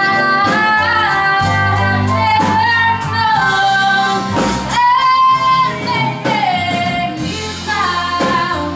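A woman singing lead with a live rock band, her long held notes sliding between pitches over drums and guitar.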